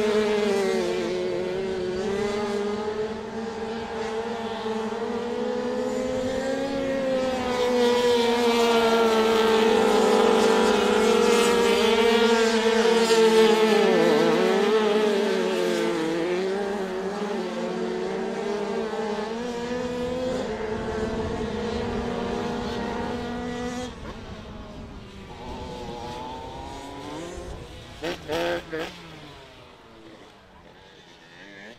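Small 85cc speedway motorcycles racing on a dirt oval, their engines running hard with the pitch wavering as the riders throttle through a corner. The engines drop away after the finish, and a few short, louder bursts come near the end.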